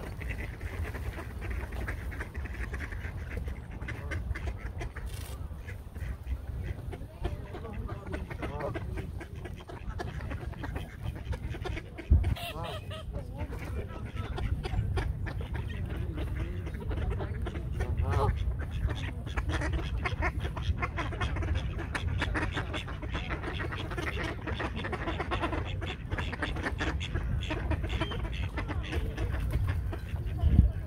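A flock of mallards and Canada geese calling on the shore, short quacks and honks coming on and off throughout, over a steady low rumble. One sharp thump about twelve seconds in.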